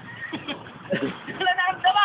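High-pitched voices calling out from the swimmers in the second half, several short drawn-out cries, over a low background of moving water.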